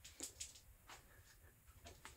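Near silence: room tone, with a few faint, brief clicks.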